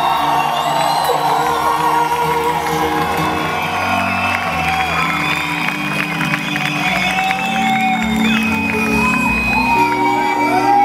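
Rock band playing live, heard from among the audience: long held notes with the crowd whooping and cheering over them.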